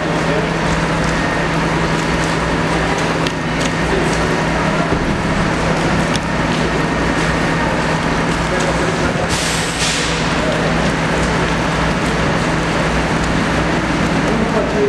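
Steady, loud machinery drone with a constant low hum inside a rock tunnel under construction. A brief hiss comes about nine and a half seconds in.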